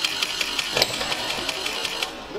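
A rapid run of irregular clicks and rattles, with one sharper click a little before the middle.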